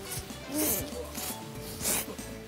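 Crisp crunching of toasted hot-sandwich crust as two people bite and chew, in a few short bursts, the loudest near the end. Soft background music underneath.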